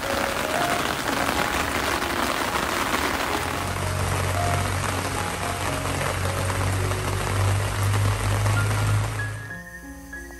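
Steady, heavy rain falling, with background music playing under it. The rain sound drops away near the end, leaving the music clearer.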